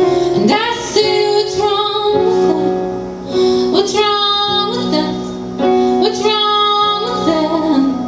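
A woman singing solo with her own electric keyboard accompaniment: long held sung notes in three phrases over steady keyboard chords.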